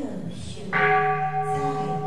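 A temple bell struck once, a little under a second in, ringing on steadily with several held tones.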